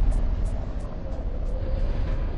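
Low rumbling tail of a boom sound effect, slowly fading away, with a light run of faint high ticks over it.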